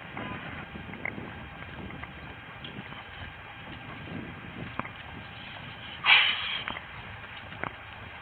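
Steady traffic noise from the street below, heard through a body-worn camera, with faint footsteps and gear rustle as the wearer walks. About six seconds in, a short loud rushing burst.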